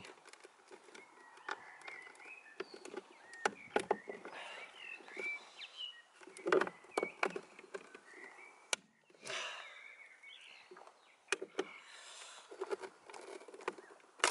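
Scattered sharp plastic clicks and knocks from prising the indicator cap off a Ford Fiesta ST wing mirror, its retaining clips being pushed out with a pen, with a brief scraping rub a little after halfway. Faint high chirping sits in the background.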